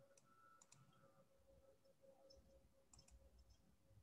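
Near silence: a few faint computer mouse clicks, about three within the first second and another small group about three seconds in, over a faint steady hum.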